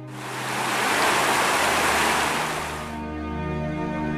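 A burst of rushing noise that swells in at once and cuts off about three seconds in, laid over slow background music.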